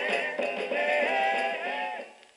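1960s group soul record playing from a 45 rpm single on a turntable: male vocal-group singing over the band, with the music fading out right at the end.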